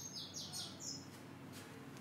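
A small bird chirping faintly: a quick series of short, high chirps, each falling in pitch, several a second, dying away about halfway through.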